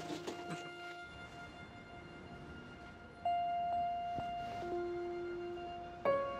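Soft background music of slow, sustained keyboard notes, with a louder new note coming in about three seconds in and a lower one near the end.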